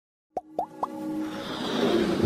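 Motion-graphics logo intro sound effects: three quick rising pops, each a short upward-sliding blip, within the first second, then a whoosh that swells with held musical tones toward the end.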